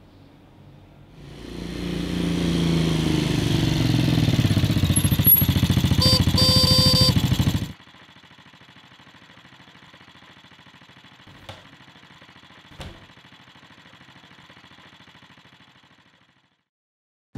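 A motorcycle engine swelling in loudness as it comes near, with two short horn beeps about six seconds in, then stopping abruptly. After that only a faint steady hum with two light clicks.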